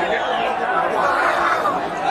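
Crowd chatter: many voices talking over one another at a steady level, with no single voice standing out.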